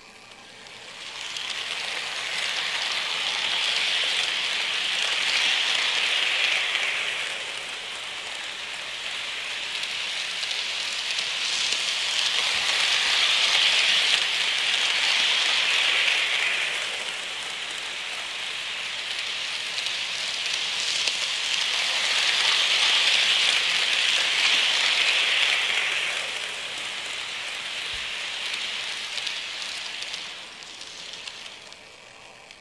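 Märklin HO-scale BR 24 model steam locomotive and its freight cars running on metal track: a steady hissing rattle of wheels and motor that swells three times as the train comes round the loop close by.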